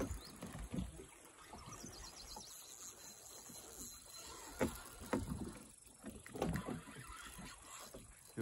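Quiet sounds aboard a small boat on calm water: water lapping at the hull, with a few light knocks and bumps against the boat.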